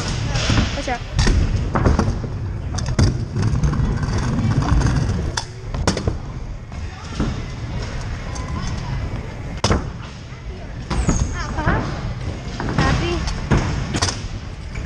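Stunt scooter wheels rolling over plywood skatepark ramps: a steady low rumble broken by sharp knocks and clatters of the wheels and deck hitting the ramp surface, the loudest single knock about two-thirds of the way through.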